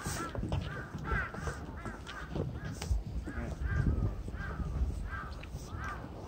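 A bird calling over and over in a quick series of short, harsh calls, about two to three a second, over a low rumble.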